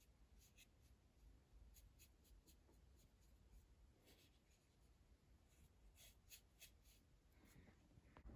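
Near silence, with faint, scattered scratchy ticks from a small paintbrush working paint onto a wooden birdhouse.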